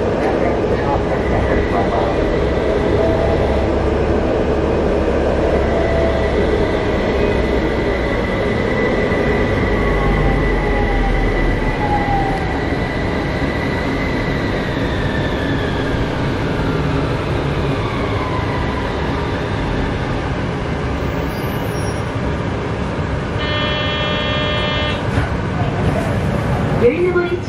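Interior running noise of an HU300 light-rail tram, with the electric traction drive's whine holding a steady pitch and then falling away as the tram brakes for a stop. A short electronic buzzer tone sounds near the end.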